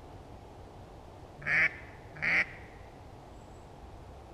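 Two short duck quacks, under a second apart, over a faint steady background hiss.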